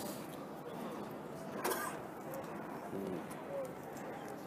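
Quiet city street background with faint, low bird calls: a brief louder call just before the middle and two more short ones about three seconds in.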